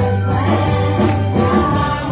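A live praise band playing and singing: several voices on microphones over keyboard and electric guitar, with a held low bass note that shifts near the end.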